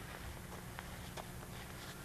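Quiet background: a steady low hum with a few faint light ticks, about a second in.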